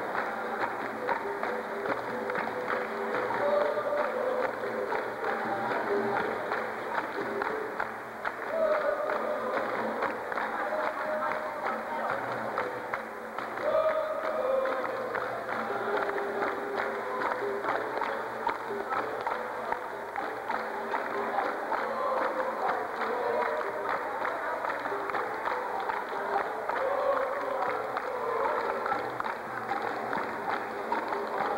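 Capoeira roda music: a group singing with steady rhythmic hand-clapping, over the roda's atabaque drum and berimbau.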